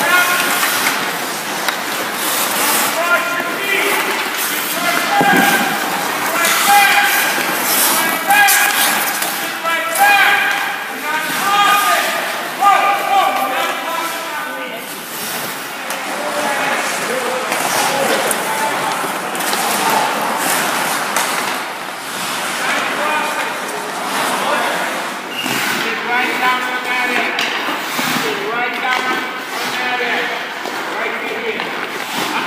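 Ice hockey skates scraping and carving on rink ice, with sticks and pucks clacking, under indistinct voices in the rink.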